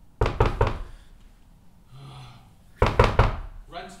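Knocking on a door: three quick raps, a pause of about two seconds, then three more raps.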